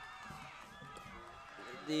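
Faint, indistinct voices from the stadium crowd, and then near the end a man starts to speak.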